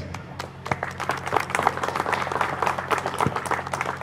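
An audience applauding: many hands clapping in a dense, even patter, over a steady low hum from the sound system.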